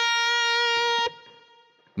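Hamer Slammer Series electric guitar sounding a single A-sharp note, held steadily for about a second and then cut off, dying away to near silence.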